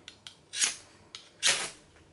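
Opinel No. 6 knife blade scraped hard down a ferrocerium rod twice, two short scrapes about a second apart, throwing sparks, with a few light clicks of blade on rod between strikes.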